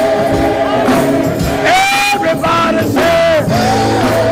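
Gospel music: a singer holding long notes and sliding between them, over steady accompaniment.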